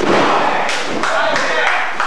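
Wrestlers' bodies slamming down onto the canvas of a wrestling ring: a loud thud at the start, then two sharper slaps, over shouting voices.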